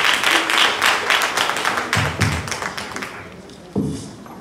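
Congregation applauding, the clapping thinning out and fading away about three seconds in, with a couple of low thumps near the end.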